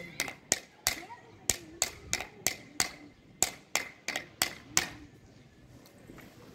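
Bharatanatyam teacher's wooden stick (thattukazhi) struck on a wooden block (thattu palagai), beating time for the dance steps: sharp, even knocks about three a second that stop about five seconds in.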